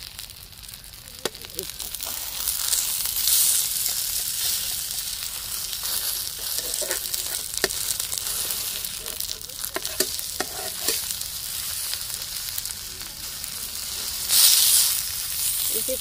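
Stuffed taro-leaf rolls sizzling in hot oil in an iron pan while a metal spatula turns them, with scattered clicks and scrapes of the spatula on the pan. The sizzle grows louder about two seconds in and flares once near the end.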